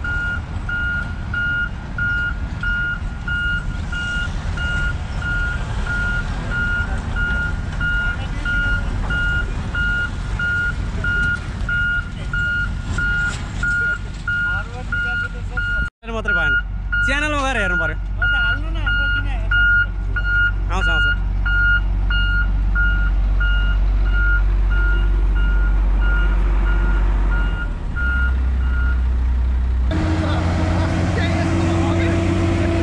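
Heavy road-roller diesel engine running close by, with a reversing alarm beeping at an even rate over it; the beeping stops near the end as the engine note changes.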